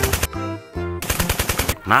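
Two bursts of rapid automatic gunfire, about a dozen shots a second: a brief one at the start and a longer one about a second in.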